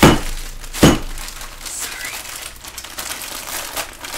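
Plastic bag of frozen shredded mozzarella crinkling and crunching as it is squeezed and broken up by hand, with two loud thumps about a second apart near the start.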